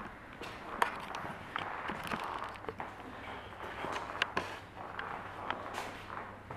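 Footsteps on a hard floor and the handling noise of a handheld camera being carried: irregular soft clicks and rustles.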